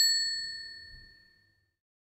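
A single bright bell-like ding struck once, its clear ringing tone fading away over about a second and a half.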